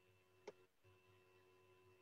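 Near silence: faint room tone with a low steady hum, and one soft click about half a second in.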